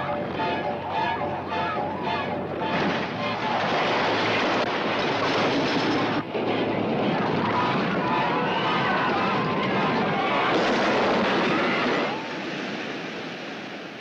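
A roller coaster train rushing along its track with a dense roar, and riders screaming over it. The sound eases about two seconds before the end.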